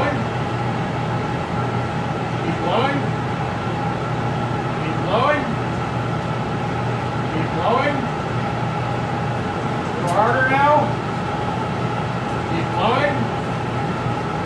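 A steel glassblowing pipe rolled back and forth along the arms of a glassblower's bench, giving a short squeak that rises and falls in pitch about every two and a half seconds. Under it runs a steady hum with a couple of held tones.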